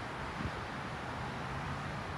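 Steady outdoor background noise: a low hum of distant road traffic with a light hiss of breeze.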